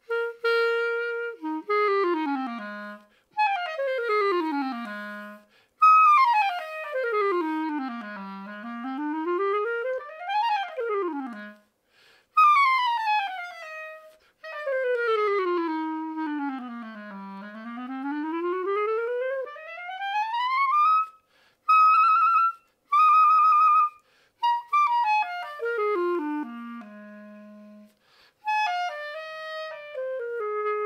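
Orsi 21.5 E-flat clarinet played solo: fast scales and runs sweeping down to the bottom of its range and back up into the high register. A couple of short high notes come past the middle, then a run down to a held low note.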